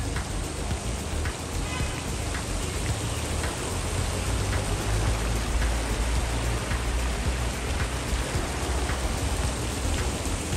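A small garden fountain jet spraying up and splashing back into a stone pool: a steady rush of falling water.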